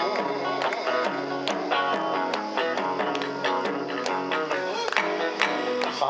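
Kawachi ondo instrumental interlude: a guitar picking the tune in quick notes over taiko drum beats.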